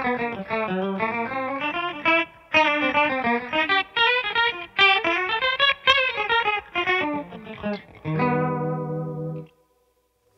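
Electric guitar (a Telecaster) played through a Diamond Vibrato pedal with its speed turned up, the vibrated amp blended with a dry amp: a jazzy run of single notes with a fast, wobbly pitch warble. Near the end it settles on a held lower chord, then stops.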